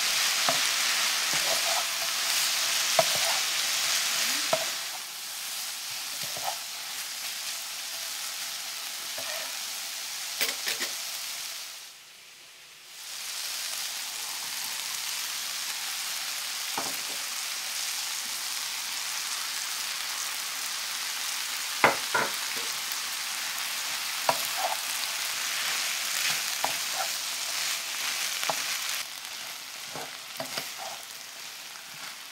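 Sliced bell peppers and red onion sizzling in a nonstick frying pan while a wooden spatula stirs them, knocking and scraping against the pan now and then. The sizzle is loudest for the first few seconds and drops away briefly near the middle.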